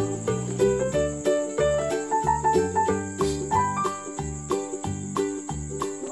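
Children's background music with a steady beat of about two bass pulses a second and a bright stepping melody, with a steady high-pitched tone running through it.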